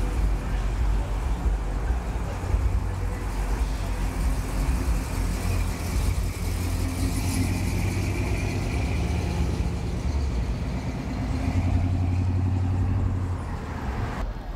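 Cars driving past close by: a steady low engine rumble with road noise, swelling louder for a couple of seconds near the end.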